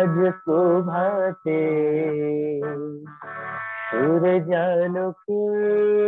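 A devotional song: a voice singing phrases with wavering pitch over held notes, broken by short pauses about every one to two seconds. The sound is thin and cut off above the middle range, as heard through an online call.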